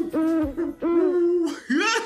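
A man's voice imitating an owl, a string of about four hoots with one held longer about a second in.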